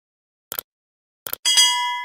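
Sound effects of a subscribe-button animation: two short mouse clicks about a second apart, then a bright notification-bell ding about one and a half seconds in that rings on for about a second.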